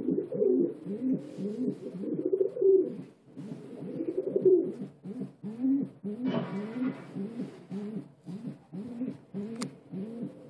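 Several domestic pigeons cooing, their low rising-and-falling coos overlapping without a break. A short burst of rustling noise comes about six seconds in, and a sharp click near the end.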